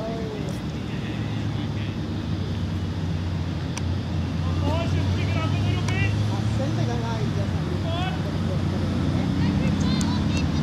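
Steady low engine hum from a motor vehicle, slowly growing louder, with short high calls over it from about halfway.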